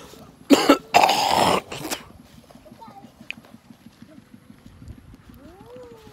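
A person coughing twice, loud and close, about half a second and a second in, then quiet outdoor background with a faint child's voice near the end.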